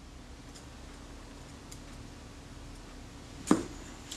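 Quiet room tone with a faint steady hum and two faint ticks, then one sharp click about three and a half seconds in as small hand tools are handled on the workbench during fine shutter-blade assembly.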